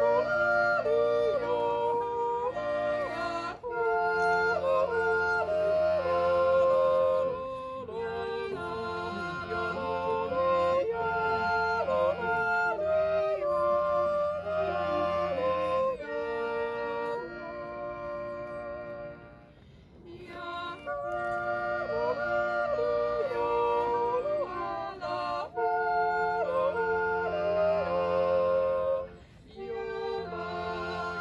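A female yodelling duo sings in two-part harmony, the voices flipping sharply between chest and head register. Steady sustained chords from a small button accordion accompany them. There are short breaks between phrases.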